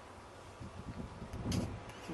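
Wind buffeting the microphone in uneven gusts, with a brief louder rush about one and a half seconds in.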